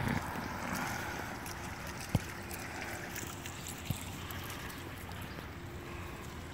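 Water from a stone bubbler fountain running down the stone onto a bed of pebbles: a steady wash of water noise, with two brief clicks about two and four seconds in.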